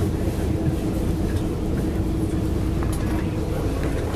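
Interior of a moving city bus: steady engine and road rumble with a constant hum, and a few light rattles.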